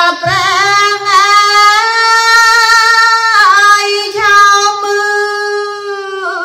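A woman singing Khmer smot, the unaccompanied Buddhist chanted recitation: long held notes opened with wavering ornaments, with a brief dip in pitch about three and a half seconds in before the next long note.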